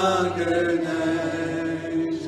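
Two men singing a worship song, drawing out one long held note.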